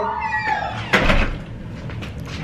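A voice drawn out and falling in pitch, then a door shutting with a single thump about a second in.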